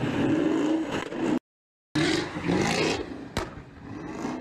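A drifting car's engine revving in rising and falling sweeps. The sound cuts out for about half a second near the middle, then the revving picks up again, with a sharp click near the end.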